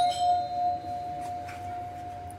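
A single bell-like chime: one clear ringing tone, with a brief bright shimmer above it at the strike, fading slowly.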